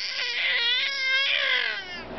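A baby girl's long, high-pitched, wavering vocalizing — a sustained sung 'aaah' that holds its pitch, then drops and stops just before the end.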